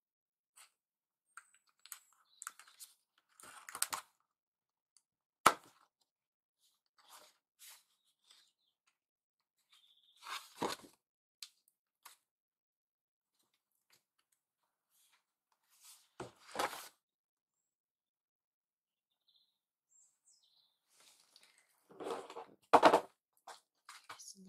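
Sheets of kraft card being handled and clipped together with binder clips: intermittent rustles and scrapes of card, a sharp click about five seconds in, and the loudest burst of rustling near the end.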